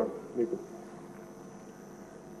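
A man says a brief word, then pauses; the pause holds only faint room tone with a steady low hum.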